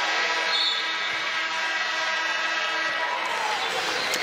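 Basketball arena's end-of-game horn sounding one long, steady note for about three and a half seconds as the game clock hits zero.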